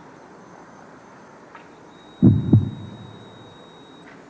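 Two low thumps about a third of a second apart, about halfway in, in a heartbeat-like pattern. A faint high steady tone starts just before them.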